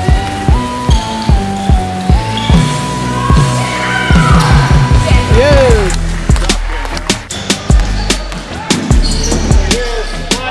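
Basketball dribbled hard on a hardwood gym floor, a quick run of bounces for the first few seconds, then scattered thuds, with sneakers squeaking in short high squeals as players cut. Music with a simple stepping melody plays underneath.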